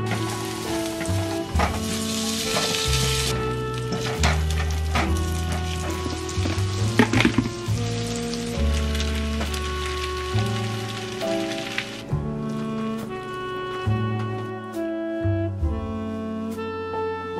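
Food sizzling in a hot pan with a few sharp knocks of a utensil, over background music with a bass line. The sizzling stops about twelve seconds in, leaving only the music.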